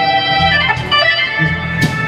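Live blues band playing a slow groove, led by an organ-toned keyboard over electric bass and drums, with a drum or cymbal hit near the end.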